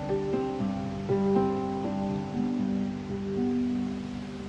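Harp played slowly and softly, single plucked notes in the low and middle register, a few a second, each left to ring on and overlap the next.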